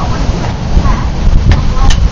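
Wind buffeting the camera microphone, a loud low rumble, with two sharp clicks near the end.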